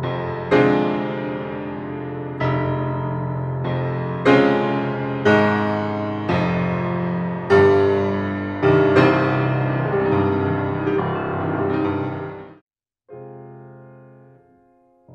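Grand piano playing slow chords with the sustain pedal held down, each chord struck about once a second and ringing on into the next, so the sound blooms full and resonant. Near the end the sound breaks off, and a softer chord follows that stops short.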